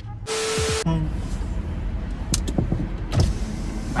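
Car interior with the engine running: a steady low rumble, with a few faint clicks. Near the start there is a short, loud hissing burst that carries one steady tone.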